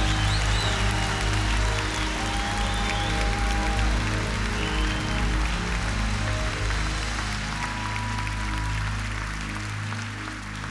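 Church worship music, sustained keyboard chords over a low bass, under a large congregation shouting and clapping in praise. The deepest bass note drops out a little past the middle.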